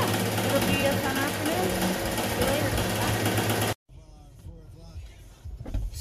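Melco multi-needle embroidery machine stitching at speed: a loud, steady, fast mechanical rhythm over a constant hum. It cuts off suddenly about four seconds in, giving way to a much quieter low rumble.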